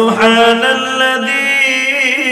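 A man reciting the Quran in a slow, melodic chant, drawing out long held notes that waver slightly in pitch. His voice is amplified through microphones.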